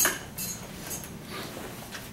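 A few light clicks and short scraping sounds in a classroom, the loudest at the very start, others about half a second and a second and a half in.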